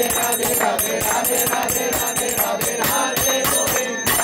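Instrumental kirtan music: small hand cymbals (kartals) ringing in a fast, steady beat over a held melody, with no singing.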